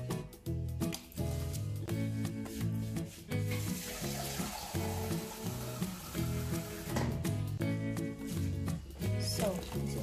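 Background music with a steady bass line throughout. In the middle, a few seconds of water poured from a measuring jug into a steel bowl of elderflowers, a steady hiss that stops abruptly.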